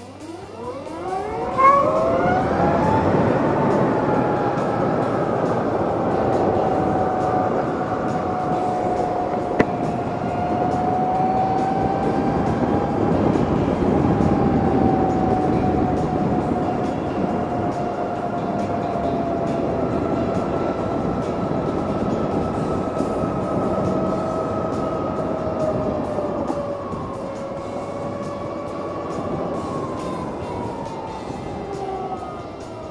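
A Harley-Davidson LiveWire electric motorcycle's motor whine rises in pitch as it pulls away from a stop. After about three seconds it settles into a steady whine at cruising speed over a rush of wind and road noise, and the pitch sinks a little near the end.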